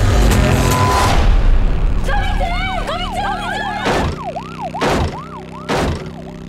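Music fades into a siren sounding in quick rising-and-falling sweeps, like a police car's yelp, over a low drone. Three loud hits land about a second apart near the end.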